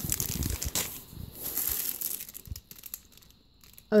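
Clear plastic packaging bag crinkling as it is handled, with many small crackles. The crinkling dies away about three seconds in.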